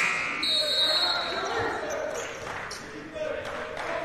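A basketball bouncing on a hardwood court in a large, mostly empty arena, with the hall echoing. A steady buzzer ends about half a second in, and a thin high steady tone holds until nearly two seconds in.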